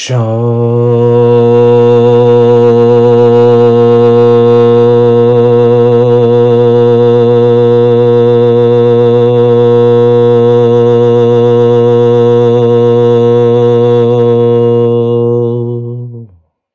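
A low male voice chanting one long, unbroken held note, a sound-healing toning, for about sixteen seconds. It starts abruptly and keeps a steady pitch with a slight waver.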